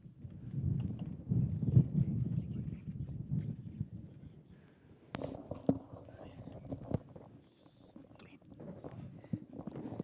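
Indistinct, muffled talk in the background, loudest in the first few seconds and then fading, with two sharp clicks about five and seven seconds in.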